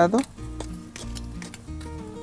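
Small hand trowel scraping and digging into loose potting soil at the side of a plant pot: a run of soft, irregular scratchy scrapes, under soft background music.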